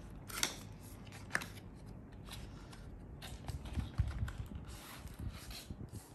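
Packaging being handled during an unboxing: scattered clicks and rustles of cardboard and paper, with a few low thumps about four seconds in.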